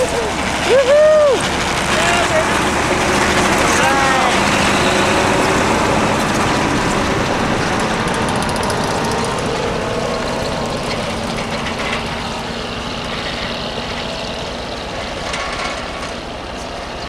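A tracked snowcat's engine running and its tracks clattering as it drives away, the sound slowly fading. A few short whoops rise and fall in the first few seconds.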